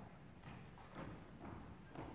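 Faint footsteps on the hard stage floor, hard-soled shoes or heels knocking about twice a second in the large hall.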